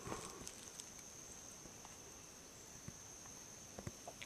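Faint outdoor quiet with a steady high-pitched insect drone and a few soft clicks.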